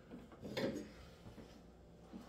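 Faint kitchen handling noise: a short clatter about half a second in, followed by a few small knocks.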